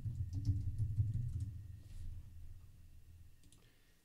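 Computer keyboard typing: a few keystrokes in the first couple of seconds as a terminal command is entered, over a low hum that fades away over the next few seconds.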